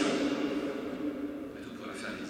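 A man speaking French into a lectern microphone, his voice a little quieter in the second half.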